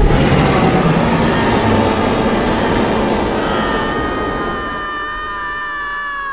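Several T. rexes roaring together in one long, rough roar that slowly fades. From about halfway, the young green dinosaur joins in with a higher, steady cry that carries on over the fading roar.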